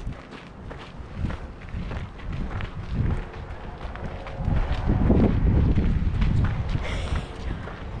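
Hikers' footsteps crunching and scuffing on a steep gravel trail with rough stone steps, getting louder about halfway through.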